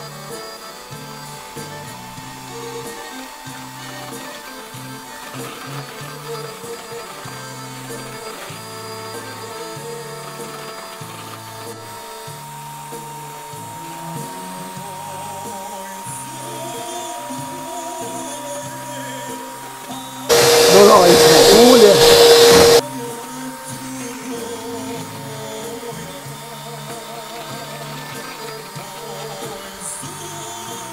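Electric hand mixer running steadily, its beaters whipping eggs into a batter in a plastic bowl, under background music. About twenty seconds in, a sudden very loud burst lasting about two and a half seconds drowns everything out.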